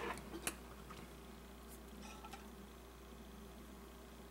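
Quiet room tone with a steady low hum, and a couple of faint clicks in the first half second from small objects being handled on a tile countertop, followed by a few fainter ticks.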